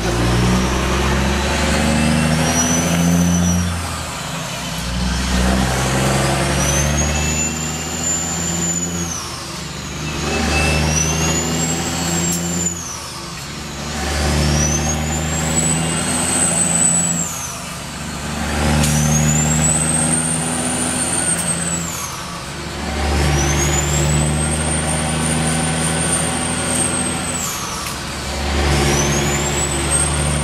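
Kenworth W900L's straight-piped Caterpillar diesel pulling up through the gears, heard from inside the cab. In each gear the engine climbs in revs with a rising turbo whistle, then the revs and whistle drop at the upshift, about six times a few seconds apart.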